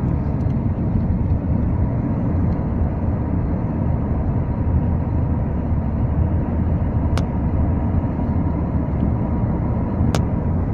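Steady road and engine noise of a moving car heard from inside the cabin, a low rumble, with one sharp click about seven seconds in.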